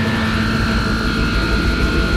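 Electric guitar effects noise: two steady, held high tones over a dense, rumbling wash of noise, the kind of drone a guitarist coaxes from effects pedals.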